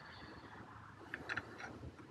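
A few faint, light clicks of small steel bolts being picked up and handled in the fingers, over a quiet background hiss.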